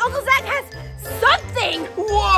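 A woman's voice over cheerful children's background music, with a tinkling jingle.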